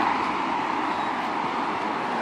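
Road traffic noise: a steady hiss of passing vehicles' tyres on the road, easing off slightly.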